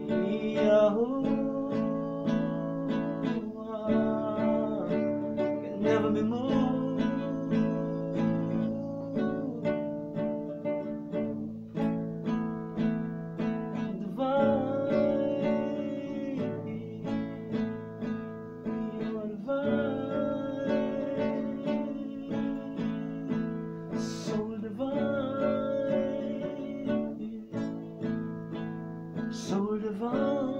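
Acoustic guitar strummed in a steady rhythm, with a man singing a melody over it.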